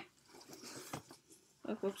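Faint rustling and light handling noise of a small book being moved about on a lap, followed near the end by a brief "Oops."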